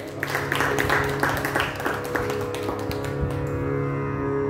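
Carnatic hand-drum percussion: a run of quick, dense strokes that dies away after about three seconds, over a steady sruti drone.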